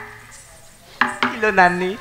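A sharp click about a second in, then a voice starting to speak with long, drawn-out vowels, after a short lull as the folk music dies away.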